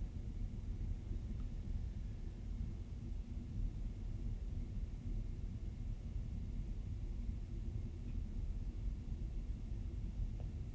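Faint, steady low rumble of room tone with a faint steady hum, and no distinct events.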